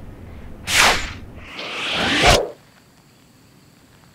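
Two whoosh transition sound effects: a short swish about half a second in, then a longer swish that swells and cuts off sharply a little past two seconds in.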